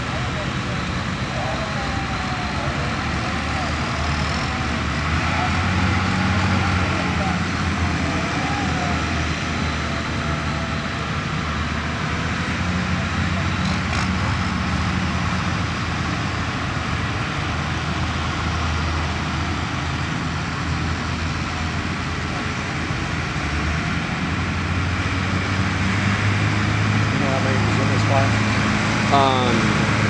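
Tractor engine running steadily at low speed, with a deep, even hum and people talking in the background.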